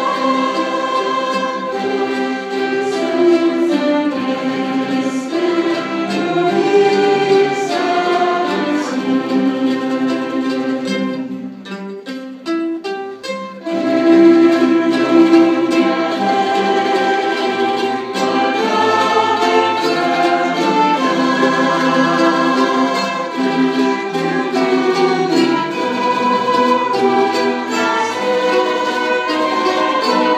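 Live amateur string and mandolin ensemble (violins, mandolins and guitars) playing with singers on microphones. The music thins to a brief quieter passage of short, choppy notes about twelve seconds in, then comes back in full.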